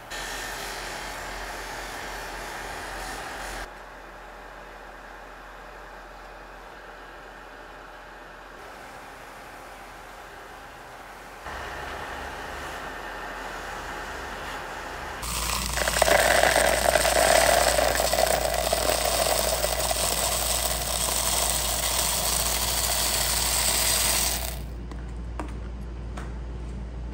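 Jeweler's bench polishing motor running with a cotton buffing wheel, which is charged with a green polishing-compound bar and then has a small silver piece pressed against it. For about nine seconds in the second half a much louder, steady rushing noise takes over, then cuts off abruptly near the end.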